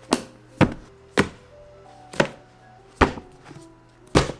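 Books being set down one after another onto a stack, five dull thunks at uneven intervals of roughly half a second to a second, over soft melodic background music.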